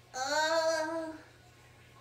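A girl's voice holding one drawn-out "uhh" for about a second, steady in pitch and almost sung.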